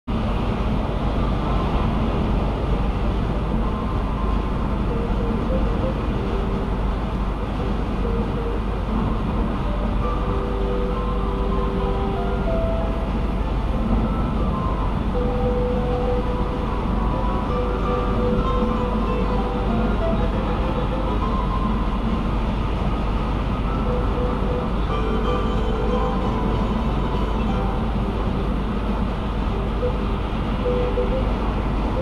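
Steady road and tyre noise heard from inside a car cruising at highway speed.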